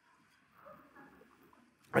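A pause filled with faint, brief laughter, the reaction to a punchline in the sermon. A man's voice starts speaking right at the end.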